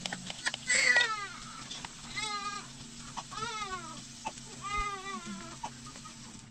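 A baby crying in four short cries, each rising then falling in pitch, the first, about a second in, the loudest.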